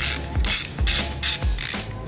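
Hand ratchet with a 13 mm socket undoing a bolt in a steering knuckle, clicking in short bursts about two or three times a second as the handle is swung back and forth. Background music with a steady beat plays underneath.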